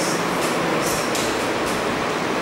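Marker pen drawing on a whiteboard: a few short strokes over a steady hiss of room noise.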